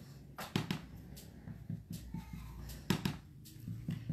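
A few light, sharp clicks and taps from hands handling small craft items on a cutting mat, the loudest a little before three seconds in.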